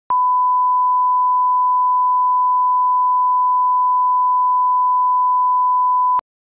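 A steady electronic test tone: one pure, unchanging high beep, switched on with a click just after the start and held at constant loudness throughout.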